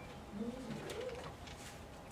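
A person's voice making a short hummed "mm" sound, about a second long, that rises and falls in pitch, with a few faint clicks around it.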